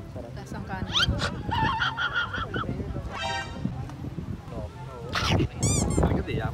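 Several people's voices talking and calling out over one another, with no clear words and a few high, sharp exclamations near the end, over a steady low background rumble.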